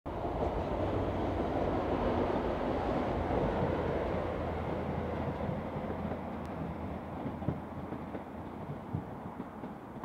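Northern Ireland Railways diesel multiple unit passing over a railway bridge overhead: a steady rumble that slowly fades as the train moves away, with a few faint clicks near the end.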